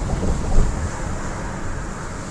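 Wind buffeting the microphone: a gusty low rumble with no clear tone, swelling about half a second in.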